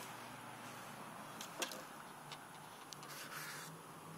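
Faint steady hiss with a few light clicks and rubs, the clearest click about one and a half seconds in: handling noise from a phone held close to a guitar.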